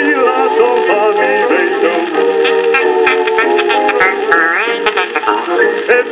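A record playing on a Dansette portable record player, in an instrumental passage between sung lines: the band carries the tune, with wavering melody lines and a rising slide about four and a half seconds in.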